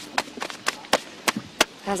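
About six sharp knocks in quick, uneven succession.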